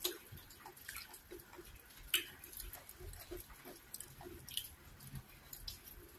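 Close-up eating sounds of cocoyam fufu and ogbono soup eaten by hand: wet chewing with scattered sharp mouth clicks and sticky smacks, the loudest about two seconds in.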